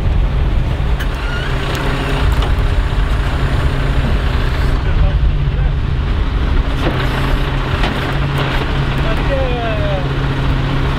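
Heavy truck diesel engine idling steadily with a low, even hum.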